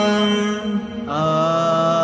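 Layered male voices holding a wordless sung note in a vocal-only nasheed, fading briefly about halfway through and coming back on a lower held note.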